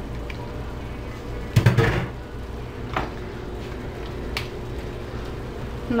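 Diced raw potatoes tipped from a plastic colander into a pan of chile broth. There is one loud knock about one and a half seconds in, as the colander meets the pan, and then a couple of light clicks, over a steady low hum.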